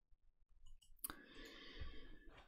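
Near silence with a few faint clicks. About a second in comes a sharper click, followed by a soft hiss-like noise lasting about a second.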